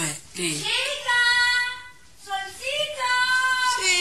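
A child's high voice singing two long held notes, about a second each, with no accompaniment.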